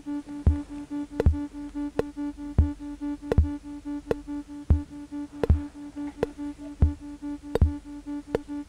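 Ciat-Lonbarde Plumbutter drum-and-drama synthesizer playing a patched loop. A fast-pulsing tone, roughened by the ultrasound section, runs over pairs of deep drum thumps that repeat about every two seconds, with sharp ticks in between.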